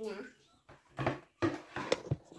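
A toddler's long, falling vocal sound trails off, then a few short knocks and brief small vocal sounds follow as a wooden plate is set down on a plastic high-chair tray.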